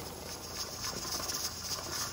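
Steady hiss of steam escaping from a Presto pressure canner on the stove.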